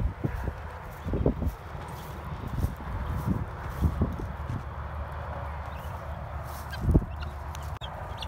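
A flock of young guinea fowl calling in short, scattered calls, the loudest about seven seconds in, over a low steady rumble.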